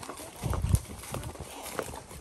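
Horses' hooves clopping at a walk on a dirt trail strewn with dry leaves: a few irregular hoof falls.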